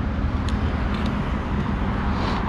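Steady low rumble of road traffic, with a couple of faint clicks.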